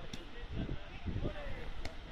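Indistinct voices over a steady low rumble of wind on the microphone, with two short sharp knocks, one just after the start and one near the end.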